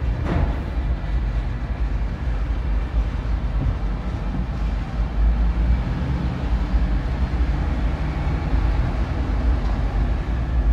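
Steady low engine and road rumble from inside the cabin of a moving car.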